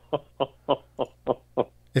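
A person laughing over a telephone line: about seven short, evenly spaced 'ha' bursts with brief gaps between them.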